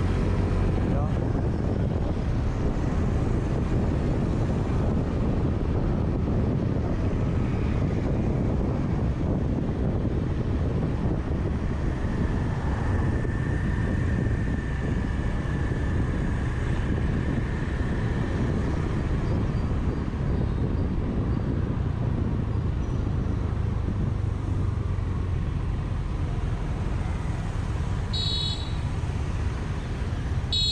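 Steady rush of wind and road noise with the low running of a Honda motor scooter under way at street speed, with traffic around. A short high-pitched beep sounds near the end.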